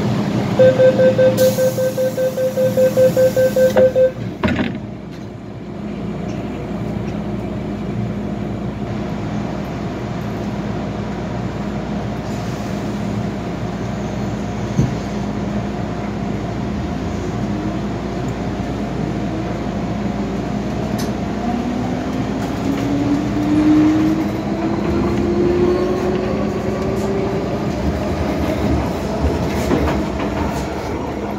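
MTR M-Train door-closing warning beeps, a rapid pulsing tone for about three seconds, ending with a thump as the doors shut. A steady hum fills the car, then from about two-thirds of the way in the traction motors whine, rising in pitch as the train pulls away.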